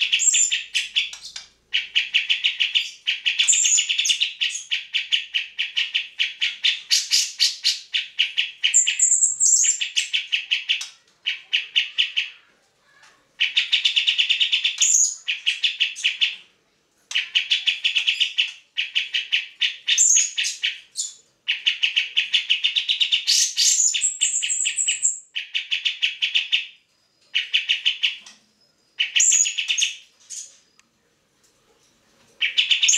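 Caged cucak jenggot (grey-cheeked bulbul) singing a lot: bursts of rapid, chattering repeated notes, each a second or two long, broken by short pauses. Several bursts open with a high rising whistle.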